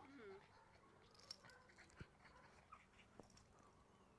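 Near silence, with a faint short whimper from a small dog at the very start and a few faint ticks after it.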